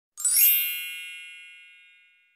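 A bright synthesized chime sound effect for a logo reveal: one shimmering strike about a quarter-second in, then a cluster of high ringing tones that fade out over the next two seconds.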